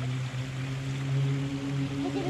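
Water running from a small waterfall into a garden koi pond, under a steady low hum.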